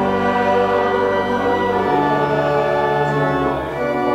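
Church music: slow, held chords with voices singing, as in a hymn.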